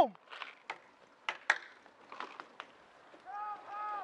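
Scattered sharp pops of paintball markers firing across the field, about five spread over a few seconds, with faint distant shouting near the end.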